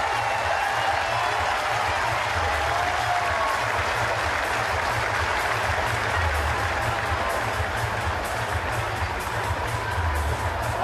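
Stadium crowd noise and applause with music playing over the public-address system, a steady wash of sound with a heavy low rumble underneath.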